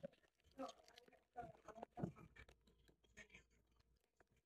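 Faint crinkling and small clicks of a foil trading-card booster pack being picked at and torn open by hand, with a few soft rustles about half a second, a second and a half and two seconds in.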